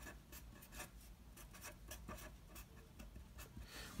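Marker pen writing on paper: a faint, irregular run of short scratchy strokes as a word is written out by hand.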